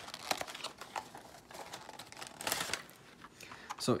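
Clear plastic blister packaging of a phone case crinkling and crackling in the hands as the case is worked out of its retail box, in irregular bursts.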